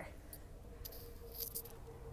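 Faint, light clicks and rattles, a few scattered brief ticks, over a low steady hum.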